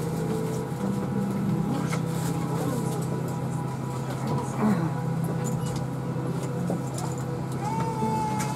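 Steady low hum of an Airbus A319 cabin's air-conditioning at the gate, with boarding passengers' voices in the background and a few light clicks.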